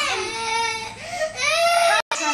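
A young girl's voice, high-pitched and drawn out, in two long sliding phrases with no clear words.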